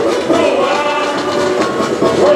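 Live samba parade music: many voices singing the samba song over the drum section's steady beat.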